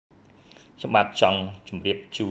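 Speech only: a man talking over a phone line. He starts about a second in, after a moment of silence.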